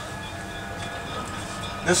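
1911 Huntington Standard streetcar running along the track, heard from inside the car: a steady rumble with a faint high whine. A man's voice begins near the end.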